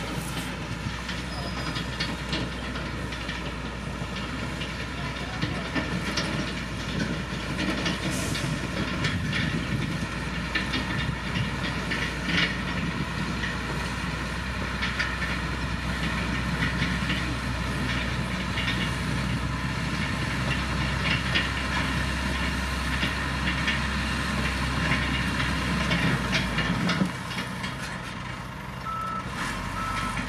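LiuGong motor grader's diesel engine running under load as its blade pushes gravel and soil, with steady crunching and clattering of stones. The low engine rumble drops away briefly near the end.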